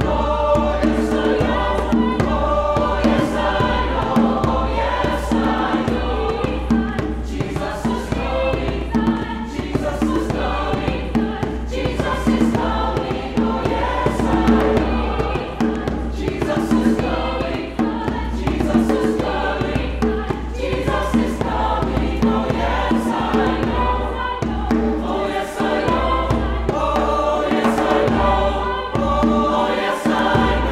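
Mixed choir of men's and women's voices singing, with a hand drum, a djembe, keeping a steady beat under the voices.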